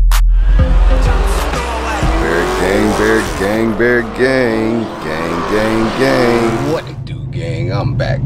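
A Dodge Charger's V8 revving hard in a burnout, with the revs swinging up and down over tyre noise, mixed with music. Near the end it gives way to a steady low hum.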